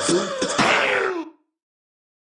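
A person's voice making wordless mouth and throat noises, clicky with a raspy burst in the middle. It cuts off abruptly about a second and a half in as the recording ends.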